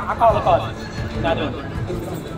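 Men's voices talking, with a short wavering, up-and-down vocal sound near the start.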